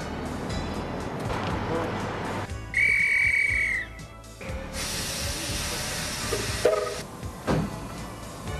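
A single shrill whistle blast, held steady for about a second, as the departure signal for a passenger train. It is followed by a hiss of air lasting about two seconds.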